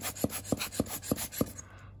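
Rubber bulb air blower squeezed in quick succession, about six short puffs of air roughly three a second, stopping shortly before the end: blowing dust away from around a camera's lens mount.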